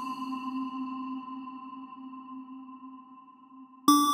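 Meditation music of bell tones: a struck bell rings and slowly fades away, then a new bell is struck just before the end at a slightly higher pitch.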